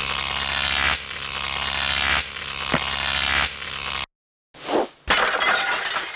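Loud rushing noise in several abruptly joined segments, cut off sharply about four seconds in, followed by a short swoosh and another burst of noise that trails away.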